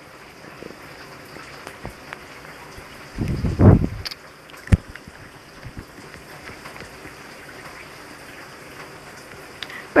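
Mostly quiet room tone, with one brief burst of low rustling or blowing noise about three and a half seconds in and a single sharp click about a second later.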